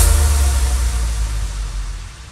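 Electronic progressive house track ending: a final hit, then its deep bass and reverb tail fading away steadily.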